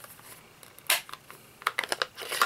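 Plastic case of an ink stamp pad being snapped open: one sharp click about a second in, then a few lighter clicks and taps near the end.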